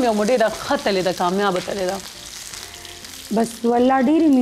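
A woman singing in wavering, drawn-out notes, pausing for about a second midway before she starts again.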